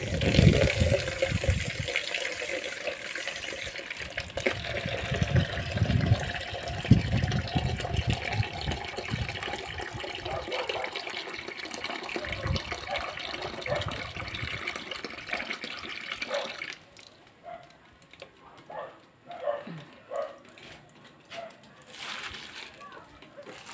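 Water splashing steadily onto potted plants as they are watered, stopping suddenly about three-quarters of the way through; a few faint knocks follow.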